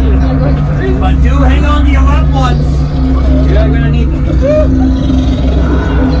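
Loud, steady low rumbling drone of a haunted house's ambient soundtrack, with unclear voices calling out over it.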